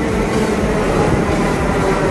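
Delhi Metro train pulling into an underground platform: a loud, steady rumble of wheels on rail, with a faint tone slowly dropping in pitch.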